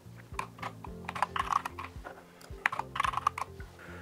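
Typing on a computer keyboard: an irregular run of quick key clicks as code is entered.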